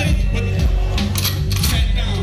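Live hip-hop music played loud through a club PA: a beat with a heavy bass line and a few sharp, bright hits in the second half, with a rapper's voice on a handheld mic over it.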